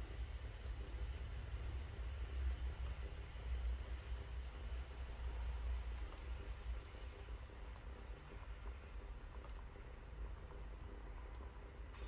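Philips D6620 portable cassette recorder running a tape before any music starts: a faint, steady hiss with a low hum from its small speaker.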